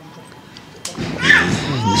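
Speech: after a short pause, a person starts talking about halfway through.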